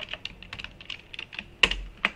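Typing on a computer keyboard: a run of scattered key clicks, with one louder keystroke about one and a half seconds in.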